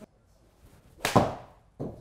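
A Mizuno MP-15 9-iron strikes a golf ball off a hitting mat about a second in: a sharp impact, with the ball smacking into the simulator's impact screen a split second after. A softer thud follows near the end.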